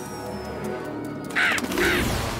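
Two short bird calls from cartoon pigeons, about half a second apart in the second half, over background music.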